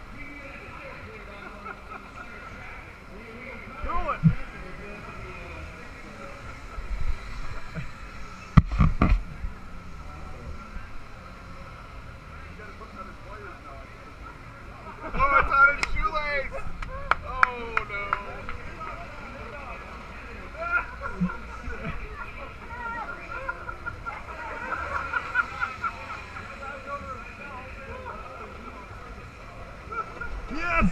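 Outdoor race-side crowd noise with indistinct voices, with a loud knock a little before the ten-second mark and a burst of nearby voices about halfway through.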